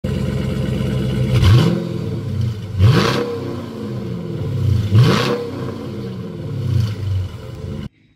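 Hemi V8 car engine idling and blipped four times, each rev rising quickly and falling back to idle; the sound cuts off abruptly near the end.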